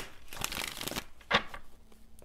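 Tarot cards being shuffled by hand: about half a second of papery rustling, then a single sharp tap about a second and a half in.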